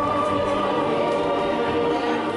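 Choral music: a choir holding long sustained notes.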